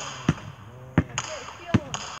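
Basketball dribbled on pavement: three bounces, about three-quarters of a second apart.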